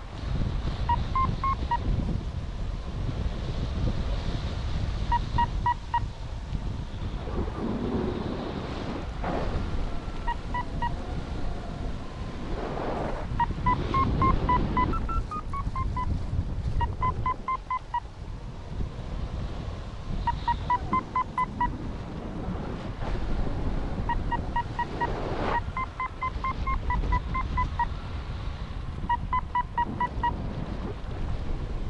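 Paragliding variometer beeping in short bursts of quick electronic beeps every few seconds, some bursts stepping slightly up or down in pitch, signalling the glider climbing in lift. Wind rumbles on the microphone underneath.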